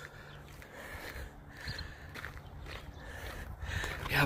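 Faint footsteps on a gravel road, a few uneven steps.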